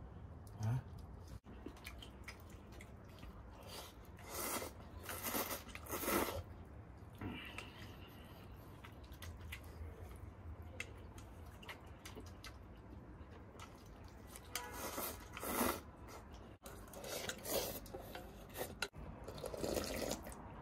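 Close-up eating sounds: slurping noodles and soup from a steel bowl, with chewing. They come in a few short slurps about four to six seconds in, and again in a cluster near the end.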